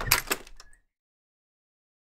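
A door opening: a quick cluster of clicks and rattles lasting under a second, right at the start.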